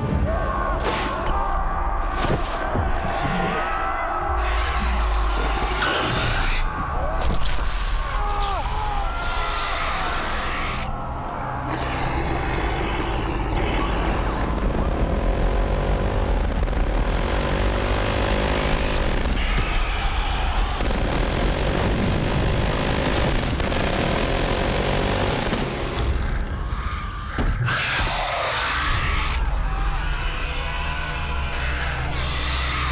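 Dramatic action-film music mixed with loud sound effects: a constant deep rumble with sudden bangs and booms scattered through it.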